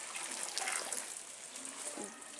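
Water sprinkling steadily from a watering can's rose onto tomato seedlings and soil in plastic cell trays.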